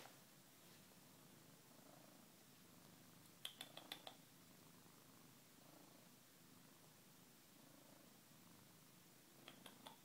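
Domestic tabby cat purring faintly and steadily while kneading a plush toy, with a short run of small clicks about three and a half seconds in and another near the end.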